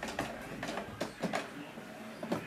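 Canon Pixma MG6120 inkjet printer's internal mechanism clicking as it starts up after being switched on, a series of irregular short clicks.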